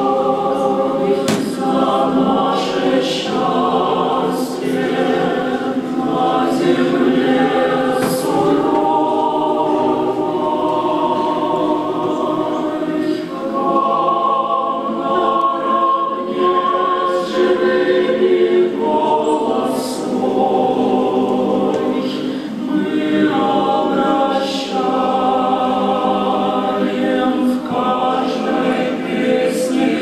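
Mixed choir of men's and women's voices singing sustained chords under a conductor.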